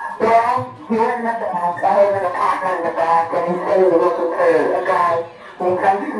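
A person singing unaccompanied in one long, wavering line lasting about five seconds, with no instruments playing.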